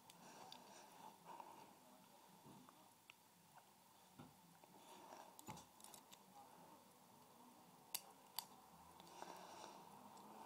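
Faint clicks and scraping of lock picks working inside a Master Lock padlock, with two sharper clicks about eight seconds in.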